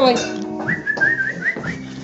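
A person whistles a quick run of short rising chirps, about five a second, to call a small dog to them.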